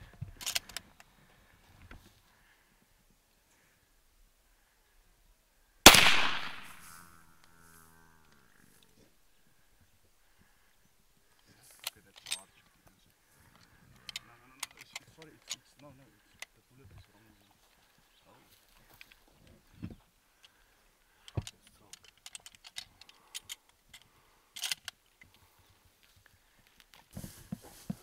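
A single big-game rifle shot at a wounded Cape buffalo: one sharp, loud crack about six seconds in, with an echo that dies away over about a second and a half. Scattered faint clicks and knocks follow.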